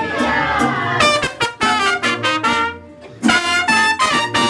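Mariachi band closing a song: two trumpets play a run of short, punchy notes over the strummed guitars. After a brief pause they end on one loud held chord near the end.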